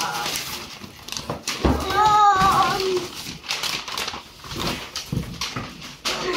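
Brown packing paper and cardboard rustling and crinkling as a child digs into a present box. About two seconds in, a child's voice rises in a high, drawn-out exclamation lasting about a second.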